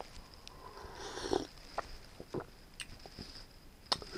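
A person sipping coffee from a mug: a soft slurp about a second in, then a few faint clicks of swallowing and lip sounds.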